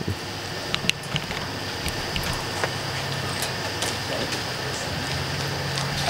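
Scattered sharp clicks and faint crackling over a steady hiss, from insects hitting and burning on a hot stage lamp. A faint low hum comes in during the second half.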